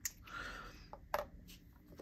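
A few light, sharp metallic clicks as small magnetic metal plates are handled and snapped against a metal fidget tool. The sharpest click comes just after a second in.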